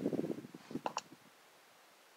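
Small mechanical handling sounds from the rifle and its gear between shots: a flurry of soft clicks, then two sharp metallic clicks about a second in.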